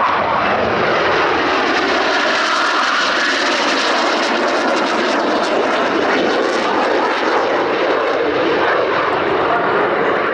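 Jet engines of aerobatic display jets flying overhead: a loud, steady rush of noise throughout.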